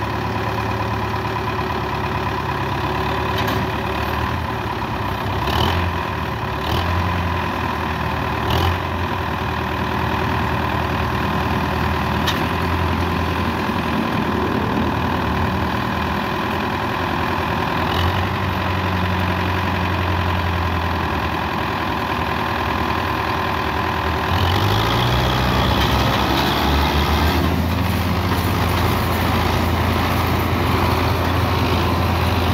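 Diesel tractor engines running steadily at low revs, with a few short knocks in the first half. About 24 seconds in, one engine revs up and stays louder as it works under load pulling a loaded sugarcane trolley.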